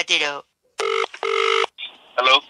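Telephone ringback tone: one double ring, two short buzzes about a fifth of a second apart, as an outgoing call rings at the other end before it is answered.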